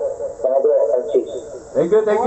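A voice speaking over a phone call, the phone's speaker held up to a microphone, sounding thin with little bass.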